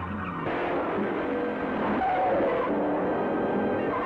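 Film background music played over the noise of a car being driven fast, engine and tyres.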